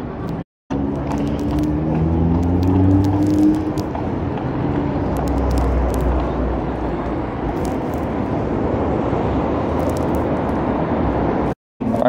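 Road traffic: a car engine rising in pitch as it pulls away in the first few seconds, over the steady noise of cars passing, with a low rumble midway. The sound drops out completely for a moment about half a second in and again just before the end.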